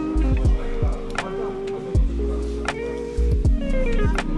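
Background music with a steady beat over held bass notes.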